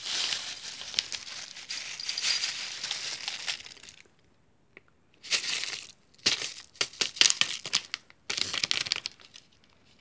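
Plastic bag of granola crinkling as it is handled and tipped to pour cereal into a bowl: a steady crinkle for about four seconds, a short pause, then several shorter bursts of crinkling and crackling.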